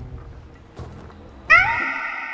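A sudden pitched sound-effect sting about one and a half seconds in. It glides up, then holds several tones and fades slowly, over a low rumbling horror backing.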